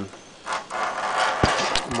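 A metal screw clamp being fitted and screwed down onto a steel square over an acrylic sheet: scraping and rattling of metal over the last second and a half, with one sharp knock about halfway.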